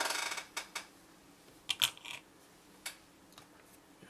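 Small wooden stands and parts being handled on a wooden tabletop: a short rattling scrape, then a few separate light taps and clicks.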